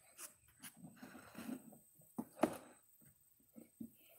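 Faint scattered handling noises: light scrapes and small clicks, the loudest a sharp click about two and a half seconds in.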